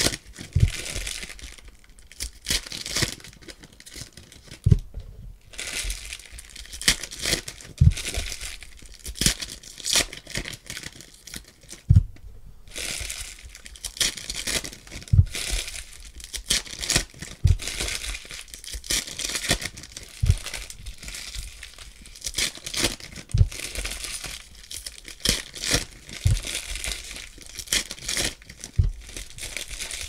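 Foil trading-card pack wrappers crinkling and tearing as packs are ripped open and handled, with a low thump every few seconds. The crackle comes and goes irregularly, with two brief lulls.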